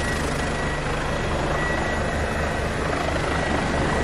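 Helicopter running on the ground: the rotor's steady low, rhythmic beat under a thin, steady high whine.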